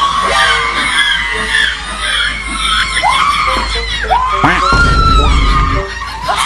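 Loud, wavering screams and shrieks, the cries arching up and down in pitch, with crowd noise beneath. A heavy low rumbling noise joins in about a second before the end.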